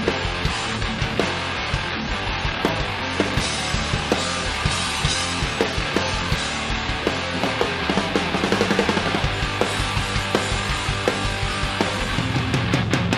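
A heavy rock band playing live: distorted electric guitar, bass and a drum kit together, with a quicker run of drum strikes about two-thirds of the way through.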